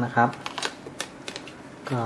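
Light rustling of paper and cardboard with a few sharp clicks as a folded cardboard documentation pack is handled and lifted out of a phone box.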